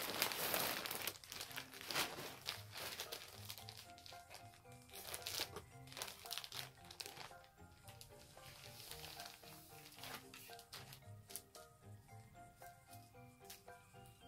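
A plastic package crinkling and rustling as it is unwrapped, loudest in the first couple of seconds and on and off after that, over quiet background music playing a light melody of short notes.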